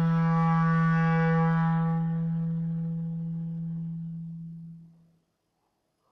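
Live chamber music from woodwind soloists and strings: one long low note, rich in overtones, held and fading away over about five seconds into silence.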